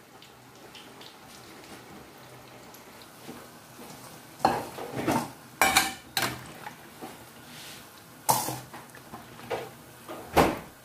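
Dough balls deep-frying in hot oil with a faint, steady sizzle. In the second half a metal spoon clinks and knocks against the frying pan several times as the browned balls are turned and lifted out.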